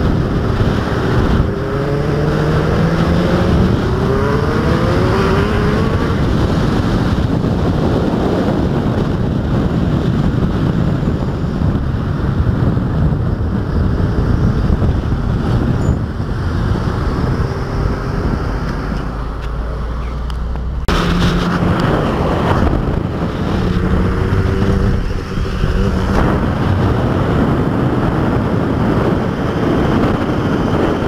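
Road and wind rush on a car-mounted action camera, with vehicle engines revving and rising in pitch several times as they accelerate. The sound breaks off abruptly about two-thirds of the way through and carries on in the same way.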